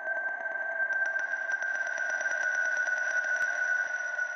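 Cartoon title sound effect: a steady, high, whistle-like electronic tone over a fast, even pulsing buzz, with a second, higher tone joining about a second in.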